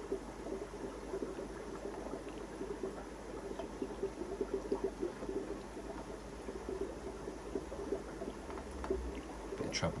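Aquarium water bubbling steadily as air rises through an air-driven filter, a continuous fine crackle.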